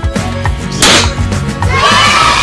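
Children's background music with a steady beat. About a second in, a single sharp whoosh-pop sound effect of a confetti cannon firing. Near the end, a crowd cheering sound effect starts.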